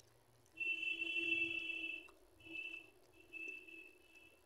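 A high-pitched, whistle-like steady tone sounds three times: one long note of about a second and a half, then two shorter ones.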